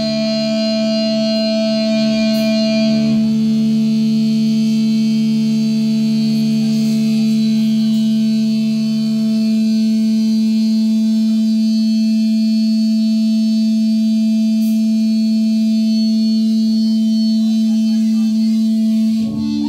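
Electric guitars through amplifiers and effects pedals holding a sustained, droning wall of ringing tones, with no drums. The sound thins a little about three seconds in and again around ten seconds.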